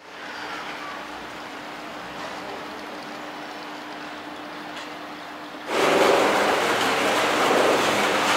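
Faint outdoor background noise with a low steady hum. About six seconds in it jumps to the much louder, steady running noise of a 1982 Montaz Mautino basket lift's station machinery, with its cable and sheave wheels turning.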